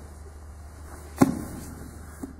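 A grappler dropping his body weight onto his partner and the foam mat during a guard pass: one sharp thump a little over a second in, with a short rustle after it.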